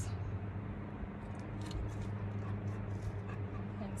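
Hand pruners snipping tomato stems and leaves rustling, a few soft, scattered clicks over a steady low hum.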